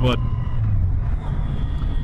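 The Yamaha FJR1300's liquid-cooled 1300cc inline-four running steadily while the bike cruises, mixed with wind and road noise.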